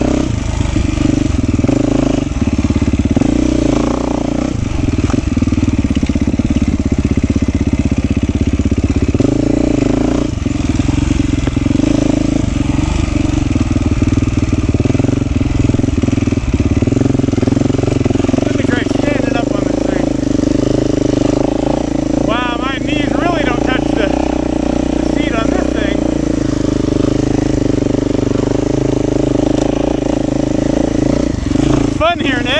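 Beta 390 RR Race Edition's four-stroke single-cylinder engine running at a fairly steady, low-to-mid engine speed while riding a trail, heard close up from the rider's camera. A few short warbling high sounds come in about two-thirds of the way through.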